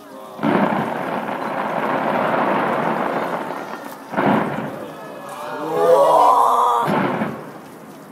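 Fireworks bursting: a sudden bang about half a second in opens a dense crackling rumble lasting about three seconds, with further sudden bangs about four seconds in and again near the end. Between the last two, voices exclaim, rising in pitch.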